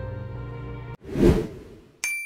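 Background music with held notes, cut off about a second in by a whoosh transition sound effect that swells quickly and then fades away.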